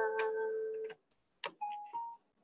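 The final chord of an electric keyboard accompaniment rings and fades, then cuts off abruptly about a second in. A click and a brief faint tone follow near the end.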